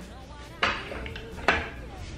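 Two sharp knocks about a second apart, each with a short ringing tail.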